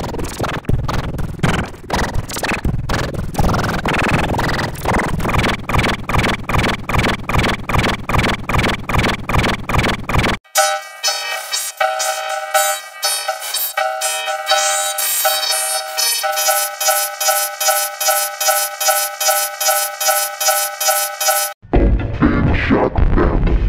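A children's song heavily warped by audio effects into a buzzy, distorted electronic sound with a steady pulsing beat. About ten seconds in it cuts out briefly and returns thinner and higher, with the low end gone, as sustained stacked tones over the pulse.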